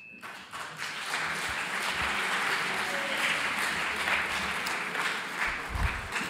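Audience applause, swelling over the first second, holding steady and tapering off near the end.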